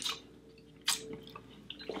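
Soft mouth sounds of someone sipping whisky and tasting it: a short wet lip smack about a second in.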